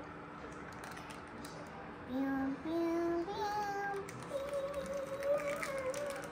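A child singing a few long, wordless notes that step upward in pitch, starting about two seconds in, with the last note held the longest.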